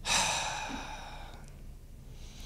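A person's long, breathy sigh, strongest at the start and trailing off over about a second and a half.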